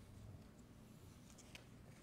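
Near silence: room tone with a faint low hum, light rustling and a small click about one and a half seconds in.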